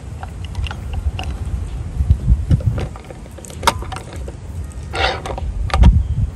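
Pipe peeler being fitted and clamped onto the end of a polyethylene pipe: scattered clicks and knocks of the tool against the pipe, the sharpest near the end, over a low rumble.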